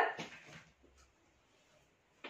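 The end of a woman's spoken word, trailing off briefly, then near silence with faint room tone.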